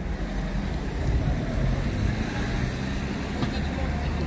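Road traffic: a steady low rumble of vehicles moving along the street, with general street noise over it.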